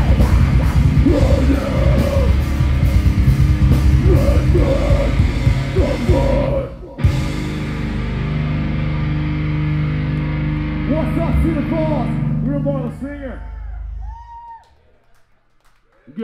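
A live heavy rock band plays distorted guitars and pounding drums with shouted vocals, then stops abruptly about seven seconds in. A low guitar chord is left ringing, with some voices over it, and it fades out near the end as the song finishes.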